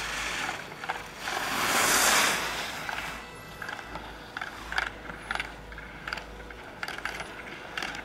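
Skis hissing over snow, swelling to a peak about two seconds in and then fading, as a skier passes; then a run of irregular sharp clicks.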